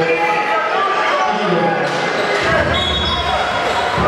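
Indoor basketball game sound: a basketball bouncing on the hardwood court under indistinct voices of players and crowd in a large echoing gym, with a short steady high tone a little under three seconds in, like a referee's whistle.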